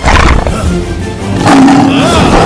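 Horror-film soundtrack: loud dramatic music with a roar-like sound effect, coming in two surges, one right at the start and a stronger one about a second and a half in.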